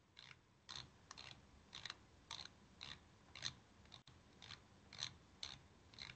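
Faint, evenly spaced clicks, about two a second, from a computer input device as a PDF is scrolled page by page.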